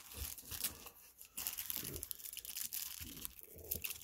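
Foil wrapper of a 2020 Bowman Platinum baseball card pack crinkling and crackling as it is handled, with a few soft knocks at first and steady crackling from about a second and a half in.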